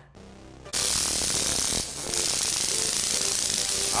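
A steady snare drum roll that starts abruptly under a second in and keeps going, the suspense build-up for a stunt.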